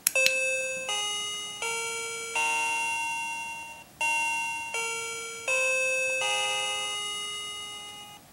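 Uni-Com wireless doorbell chime playing an electronic melody: two phrases of four notes each, every note struck sharply and fading away. Quite quiet.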